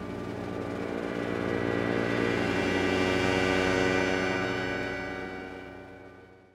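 Film score music: a sustained chord of many held notes that swells to a peak around the middle and fades away near the end.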